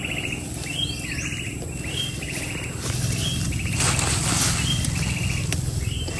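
An insect chirps in short buzzy pulses about once a second, over rustling of plants and soil as cassava roots are dug out by hand; the rustle is loudest between about three and four and a half seconds in.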